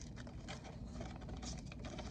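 Faint rustling and light ticks of a fanfold stack of paper thermal shipping labels being pulled from its cardboard box.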